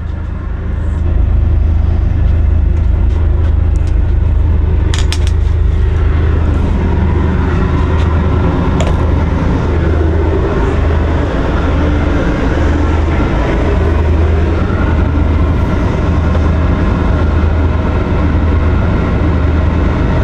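A steady low mechanical rumble with a haze of hiss, like a running machine, and a few light clicks about five seconds in.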